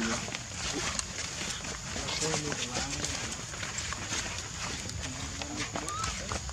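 Faint voices of people talking in the background, in short broken phrases, over scattered light clicks and rustles.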